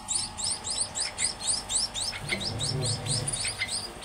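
Munia (emprit) nestlings chirping: a rapid, unbroken run of short, high, rising chirps, several a second.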